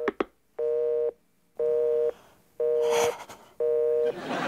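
Telephone busy tone: four steady beeps, each about half a second long and about a second apart, signalling that the call has been cut off.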